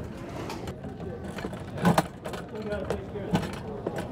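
Plastic pet travel crate clicking and knocking as its door is handled, with a sharp click about two seconds in and another near the end, over a murmur of voices.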